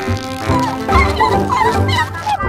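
Cartoon background music under short, high-pitched creature cries that bend up and down, from two cartoon vegetable creatures squabbling and tugging over an object.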